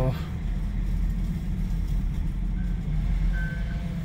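Pickup truck engine idling, a steady low rumble heard from inside the cab. In the second half come a few short, faint high beeps from a reversing alarm.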